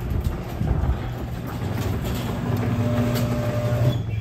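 Overhead garage door going up: a steady mechanical rumble from the opener and the door running along its tracks, with a constant low hum and a higher steady tone joining in about halfway through.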